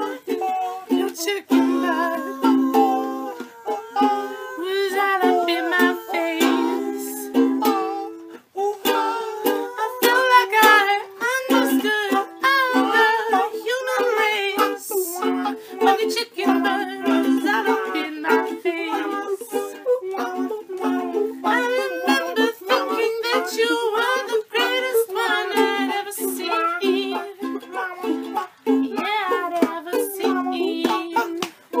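Amateur ukulele jam: ukuleles strummed in a steady rhythm, moving through a repeating chord progression.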